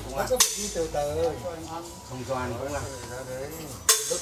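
A man's voice talking, with a sharp snap about half a second in and a louder one just before the end.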